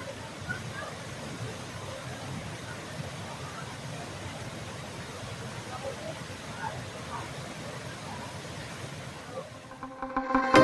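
Waterfall pouring into a plunge pool: a steady, even rush of falling water, with faint voices of people in the pool over it.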